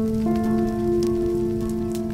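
Background music: a sustained chord of held notes, one more note entering about a quarter second in, over a steady crackling, rain-like hiss.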